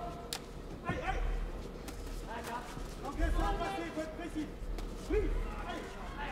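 Voices shouting in a large hall, with two sharp smacks of kickboxing blows landing within the first second.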